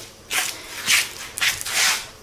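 Four short rustling, scraping noises about half a second apart, the last one the longest.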